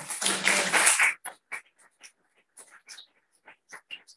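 A loud rustle of paper sheets being handled close to a microphone, lasting about a second, followed by scattered light clicks and taps.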